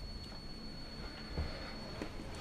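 Electroluminescent wire and its battery controller whistling: a faint, steady high-pitched tone from the wire being driven with AC at an audible frequency. A soft bump comes about a second and a half in.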